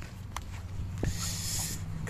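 A phone camera being handled with a hand over it: a couple of taps, then a short hiss lasting under a second from about a second in, over a low steady hum.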